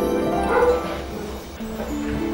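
Background music, with a short, loud yelp from a golden retriever puppy about half a second in.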